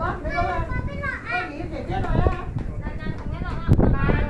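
Voices of people talking, with no words close enough to be transcribed. Near the end a loud rushing noise sets in.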